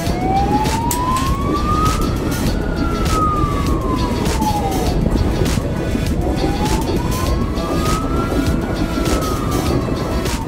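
An emergency vehicle's siren wailing, slowly rising and falling about twice, over the loud, steady rumble of an electric passenger train passing beneath, with scattered clicks.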